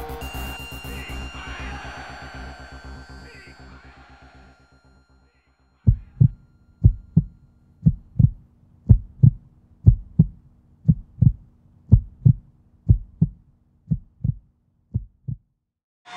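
Music fading out, then after a short gap a heartbeat-like pulse: paired low thumps about once a second, growing fainter near the end.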